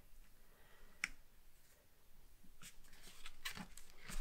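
Quiet handling of cardstock paper pieces being pressed and folded by hand: a single light tap about a second in, then soft rustles and small clicks near the end.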